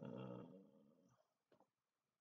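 A man's low, wordless hum that fades out over about a second, followed by two faint clicks.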